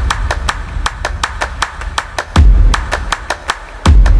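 TV programme's closing theme music: a fast, even beat of sharp ticks, about five a second, with deep bass hits coming in about two and a half seconds in and again at the end.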